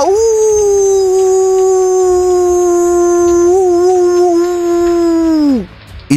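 A cartoon fox's single long howl. It rises at the start, holds one pitch for about five seconds and drops away at the end.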